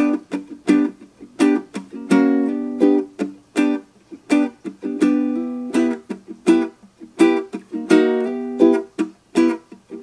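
Ukulele strummed in a steady rhythmic pattern, a G chord that changes to E minor partway through.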